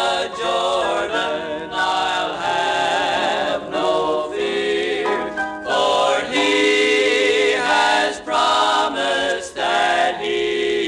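Male gospel quartet singing a hymn in harmony, in phrases a second or two long, from a vintage LP recording.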